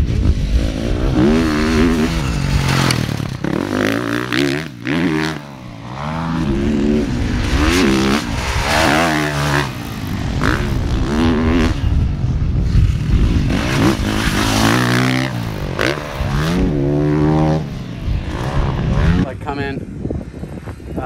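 KTM 450 four-stroke motocross bike ridden on a track, the engine revving up and dropping back over and over, each climb lasting a second or two.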